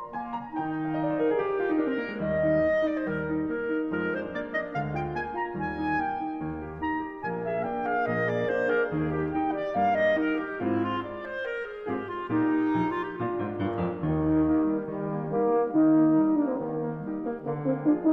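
A clarinet, French horn and piano trio playing a fast classical passage: rapid piano runs sweep up and down over repeated low chords, while the horn and clarinet hold long notes above.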